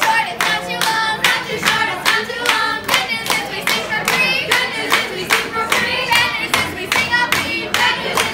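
A group of women singing a birthday song together while clapping in a steady rhythm, about three claps a second.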